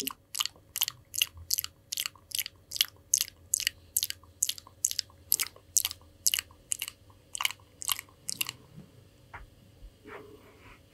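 Close-miked ASMR mouth sounds: wet clicks and smacks repeated evenly, about three a second, stopping about a second and a half before the end.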